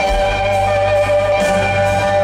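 A live band playing, with a Show-Pro pedal steel guitar holding long, steady notes over the bass.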